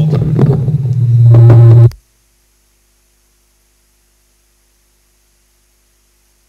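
Microphone handling noise: a loud, steady low hum with rubbing for about two seconds, then the sound cuts off suddenly into near silence.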